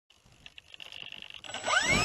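Electric motor of a Multiplex Heron RC glider spinning up its propeller: a whine that comes in about one and a half seconds in and rises quickly in pitch as the motor throttles up.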